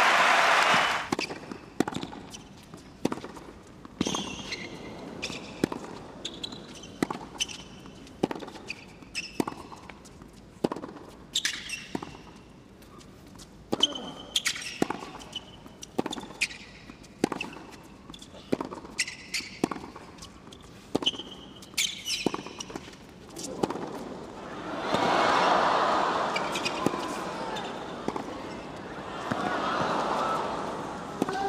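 Tennis rally on a hard court: sharp racket-on-ball hits and ball bounces about once a second, with short high squeaks of shoes on the court between them. Applause is cut off in the first second, and crowd noise swells for a few seconds near the end.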